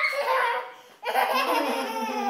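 A young child laughing loudly in two outbursts, the second starting about a second in.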